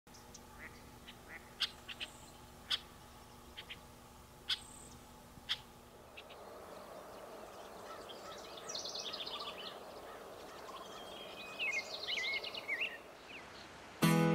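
Songbirds calling: scattered short, sharp chirps for the first half, then quick trilling song phrases over a soft, steady background rush in the second half.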